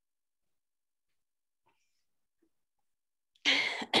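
Near silence, then a woman clears her throat loudly near the end.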